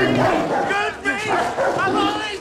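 Dogs barking and yelping in short, high-pitched calls, heard from a TV drama's soundtrack.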